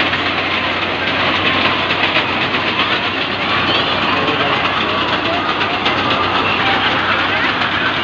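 Fairground din: a steady mechanical drone with rattling from a running metal swing ride, mixed with the voices of the crowd.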